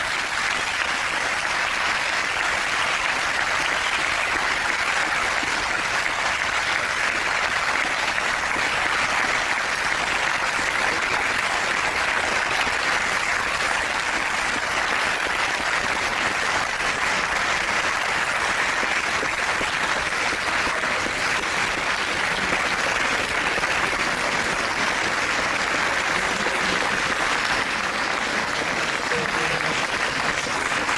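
Long, steady applause from a large audience clapping together, with no break or swell.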